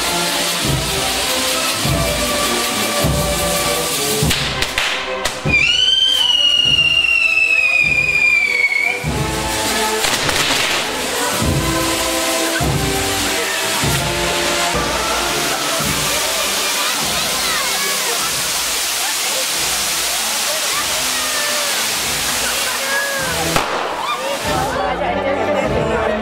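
Ground fireworks and spark fountains fizzing with a steady crackling hiss. About five seconds in, a whistling firework shrieks for about three seconds, its pitch sliding slightly down.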